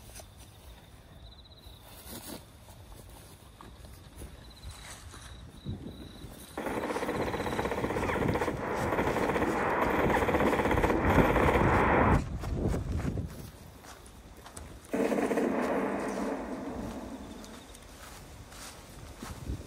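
Machine-gun fire in two long bursts: the first starts abruptly about six and a half seconds in and grows louder until it cuts off around twelve seconds; the second starts suddenly about fifteen seconds in and fades away.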